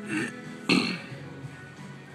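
Two short bursts of a person's voice, the second louder, over steady background music.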